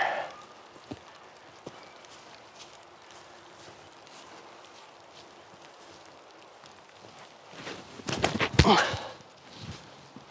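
Quiet outdoor woods background with two short clicks about a second in, then footsteps crunching through dry fallen leaves near the end.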